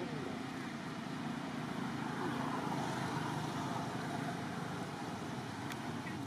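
Steady outdoor background noise, an even rumble and hiss with no distinct event, and one faint click near the end.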